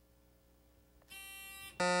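Quiz buzzer system sounding as a contestant buzzes in: near silence for about a second, then a short, quieter electronic tone, followed just before the end by a louder, steady buzzer tone.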